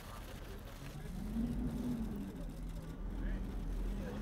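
A motor engine running, its hum rising and falling once about a second in and then holding steady, over a low outdoor rumble, with faint voices in the background.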